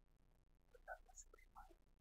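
Near silence, with a few faint whispered words about a second in.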